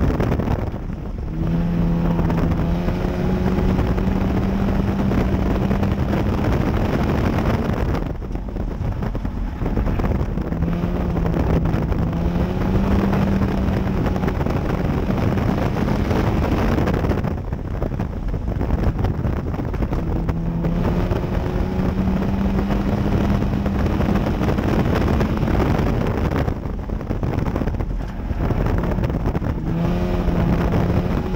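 Front-wheel-drive dirt-track race car's engine heard from inside the cockpit at racing speed, its pitch climbing steadily along each straight and falling away as the driver lifts for the turns, about every nine seconds, with wind noise over the microphone.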